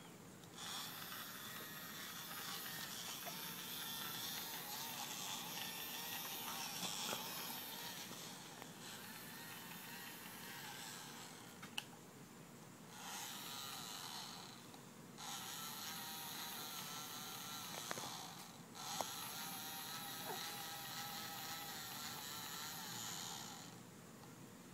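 Battery-powered toy bubble gun's small fan motor whirring while the trigger is held. It runs in four long stretches, with brief breaks about 12, 15 and 19 seconds in, and stops near the end.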